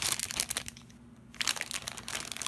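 Plastic Lego polybag crinkling as it is turned over in the hands, with a short lull about a second in.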